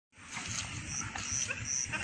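A cow licking, a run of irregular soft strokes, with a short high chirp repeating about three times a second from about a second in.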